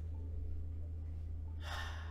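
A steady low hum, with one sharp intake of breath near the end.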